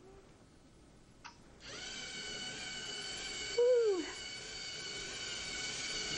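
A click, then a LEGO robot's small electric motors start up and run with a steady whine as it drives off to bowl. Midway a short, louder falling voice-like "hoo" sounds over it.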